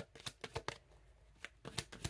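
A deck of oracle cards being shuffled by hand: a run of quick, soft card clicks, a short pause in the middle, then more clicks near the end.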